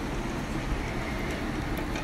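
Whole spices and fennel seeds sizzling in hot sesame oil in a pressure cooker, a steady hiss: the tempering stage before the onions go in.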